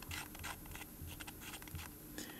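Faint, irregular scratching from fingertips turning a screw-down titanium watch case back by hand.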